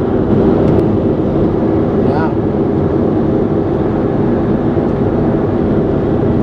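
Steady road and engine noise inside a moving car's cabin, with a brief voice about two seconds in.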